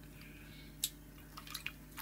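Mostly quiet with a steady low electrical hum, broken by a few faint clicks a little under a second in and again about halfway through, from a plastic water bottle being handled.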